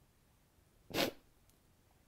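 A single short, sharp breath about a second in, a quick sniff or intake of air, with near silence around it.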